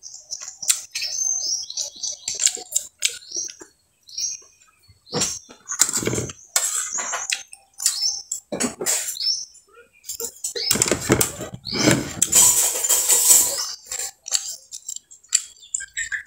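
Close-up eating sounds of squid being eaten by hand: wet chewing and smacking with short high squeaks and clicks, and a few seconds of louder, denser clatter and rustling in the last third.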